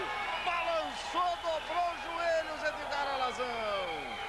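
A man speaking excitedly: live boxing commentary in Portuguese.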